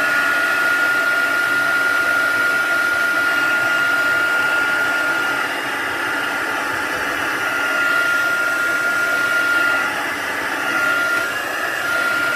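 Handheld craft heat tool running, its fan blowing steadily with a high whine that briefly fades about halfway through and again near the end.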